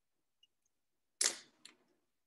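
Two sharp clicks about half a second apart, the first louder and fading quickly, over otherwise near silence.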